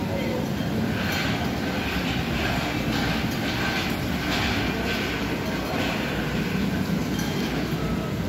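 Steady rumbling background noise with faint voices of people mixed in.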